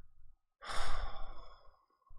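A man's exasperated sigh into a close microphone: one breathy exhale lasting about a second, starting strong and trailing off.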